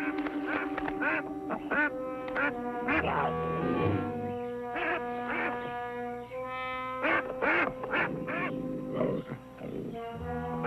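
Geese honking in short, repeated calls, several a second, over an orchestral score with long held notes.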